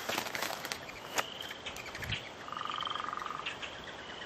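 Quiet outdoor ambience: short thin high calls from birds a few times, and a rapid trill lasting about a second starting around halfway, over a faint hiss. There are a few light clicks near the start.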